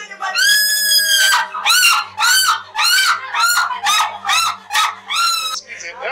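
A woman wailing in grief: one long high cry, then about ten short, high, rising-and-falling sobbing cries in quick succession that stop shortly before the end.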